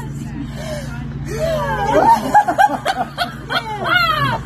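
Several women laughing and exclaiming in high, quickly swooping voices, starting about a second and a half in.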